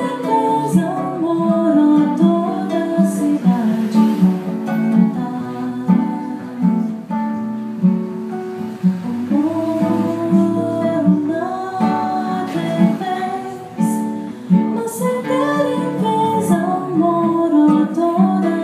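Two nylon-string classical guitars playing together in a Brazilian-style instrumental passage.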